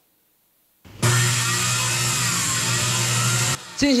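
An electric woodworking power tool's motor running at a steady pitch with a low hum, starting about a second in and cutting off abruptly some two and a half seconds later.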